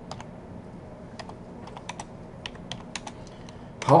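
Computer keyboard typing: irregular, separate key clicks.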